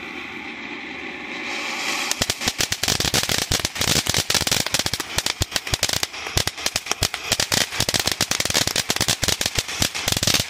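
Ground fountain firework spraying with a steady hiss, then from about two seconds in breaking into a dense, rapid crackling of many sharp pops that keeps on.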